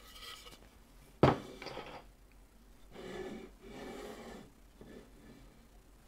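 A wooden sign set down on a workbench: one sharp knock about a second in, then quieter rubbing and scraping of wood as it is shifted into place.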